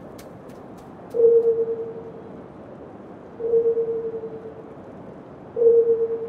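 A single mid-pitched tone sounding three times, about two seconds apart, each starting sharply and fading out over about a second, over a steady background hiss.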